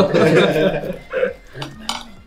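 Knife and fork clinking and scraping on a ceramic plate as pizza is cut, with a few sharp clicks of cutlery in the second half. Group laughter in the first second.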